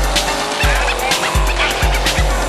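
Hip hop music with a deep, booming bass drum beat and crisp hi-hat clicks.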